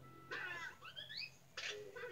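Cartoon soundtrack playing from a television: short pitched sounds with quick rising glides about half a second in, and a brief burst near the end, over a low steady hum.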